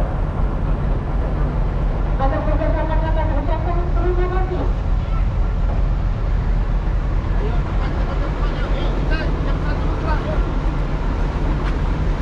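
A bus engine idling with a steady low rumble, with voices talking over it.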